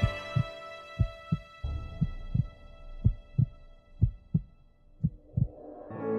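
A heartbeat-like double thump, lub-dub, repeating about once a second six times, under a sustained music chord that fades away.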